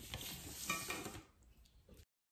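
Paper rustling with a plastic ruler scraping across it as the ruler is slid off a sheet of pattern paper. The rustling lasts a little over a second, then fades.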